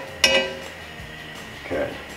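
A single sharp, ringing clink about a quarter second in: a utensil knocking against the cast iron skillet while oil is spread over the hot pan. A short voice sound comes near the end.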